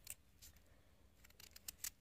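A small knife cutting into a raw peeled potato held in the hand: short crisp snicks as the blade goes through, one just after the start and a quick run of them in the second half, the loudest near the end.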